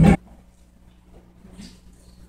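A big jazz band of brass, saxophones, piano and drums cuts off together on a sharp, loud ensemble hit right at the start. A quiet hall with a low hum follows, and there is a faint brief rustle a little past a second and a half in.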